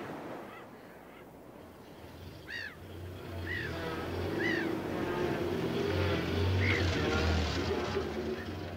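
A truck engine pulling in, growing louder over the second half. Four or five short rising-and-falling bird calls sound over it.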